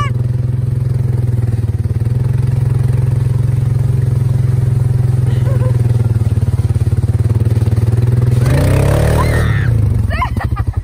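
A small motor vehicle's engine idling steadily at one even low pitch. It is the vehicle that tows the sled on a rope.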